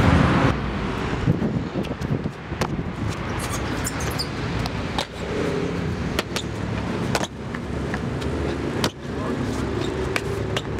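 Steady road-traffic noise with scattered sharp knocks throughout.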